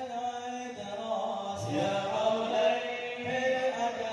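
A group of male voices chanting a sholawat in unison, in long drawn-out melodic phrases, with the drums mostly silent apart from a couple of low drum strokes.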